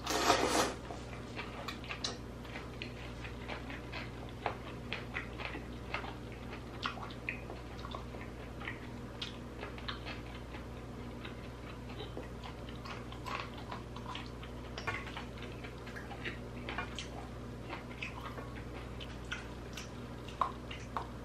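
Slurping a mouthful of ramen noodles in the first second, then chewing noodles and sea hare with many small, irregular wet mouth clicks over a steady low hum.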